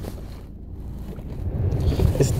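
Low, steady rumble of a car heard from inside its cabin.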